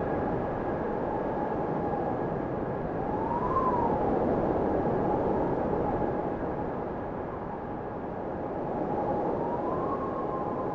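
Small quadcopter drone's motors and propellers running with a steady whine over a rushing noise; the whine rises and falls in pitch about three and a half seconds in and again near the end as the motors change speed.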